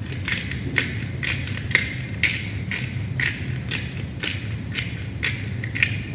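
Black pepper being ground from a hand pepper mill over a raw chicken: an even run of short crunchy grinding bursts, about two a second.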